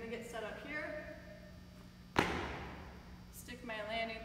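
One loud thud about two seconds in: both feet landing a standing broad jump on a rubber gym floor mat, with a short echo in the large room.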